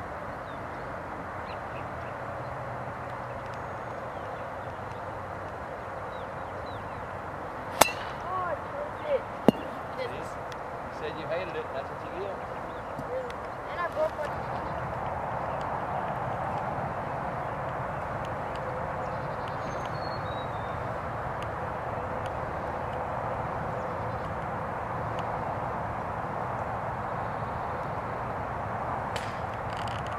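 Golf club striking a ball off the tee: one sharp crack about eight seconds in, followed by a few fainter knocks. Steady outdoor background noise, louder over the second half.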